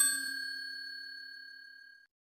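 Bell-like ding sound effect for a notification bell: struck once at the start, then ringing on in a few steady tones that fade away over about two seconds.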